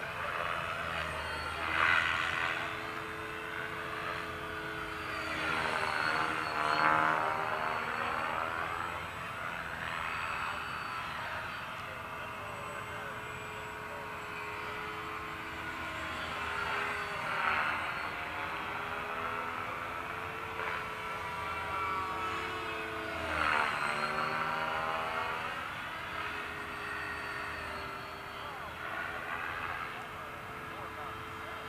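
Electric RC helicopter (Align T-Rex 550) and RC planes flying, a steady motor and rotor whine running throughout. The pitch dips and recovers about four times as the models manoeuvre and pass.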